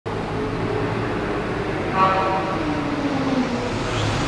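Audi R8's 5.2-litre FSI V10 with a PP-Performance exhaust running at idle, with a short throttle blip about two seconds in and the revs falling back slowly afterwards.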